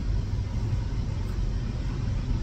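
Low, steady rumble of a car's interior: engine and road noise heard from inside the cabin.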